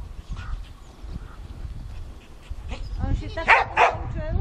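A dog yelping and barking, building to two loud barks in quick succession near the end.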